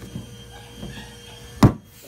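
Hollow white plastic cornhole target being handled and pried open, with faint rubbing and knocks, then one sharp loud knock about one and a half seconds in as it comes open.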